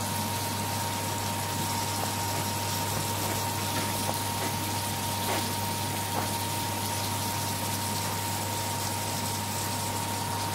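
A steady hiss with a constant high hum fills the kitchen throughout. A few faint taps of a knife on a wooden cutting board come through as raw chicken is cut into pieces.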